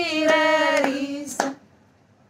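Women singing a Hindi devotional bhajan, holding a final slowly falling note, with a few hand claps keeping time. Singing and clapping stop together about a second and a half in, ending the song.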